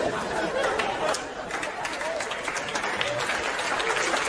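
Stand-up comedy audience laughing and applauding: many hands clapping under a mass of laughing voices, steady throughout.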